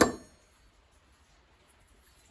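A steel chainsaw scrench (combination T-wrench) clinks once against the bench as it is picked up, with a short metallic ring at the very start.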